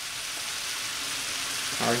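Beef strips, onions and bell peppers sizzling steadily in oil in a hot cast-iron skillet as they are stirred with a wooden spoon. A voice comes in near the end.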